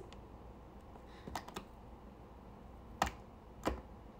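Sharp taps of long fingernails on a hard surface: a few light clicks about a second in, then two louder taps about three seconds in and shortly before the end.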